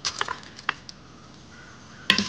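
A few light clicks as whole spices (bay leaves, cinnamon sticks, peppercorns) are scraped off a ceramic plate with a spatula and dropped into a stainless-steel pot insert, then a faint steady sizzle of the spices in hot ghee.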